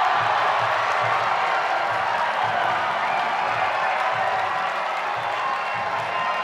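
Fight crowd cheering and shouting as a fighter goes down on the canvas, loud and sustained. Background music with a low repeating beat runs underneath.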